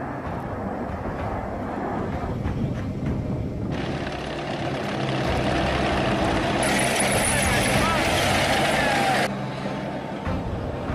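A tank's engine running as it drives, with a steady low drone under a rough wash of noise. The noise grows louder and hissier about four seconds in and drops back suddenly near the end.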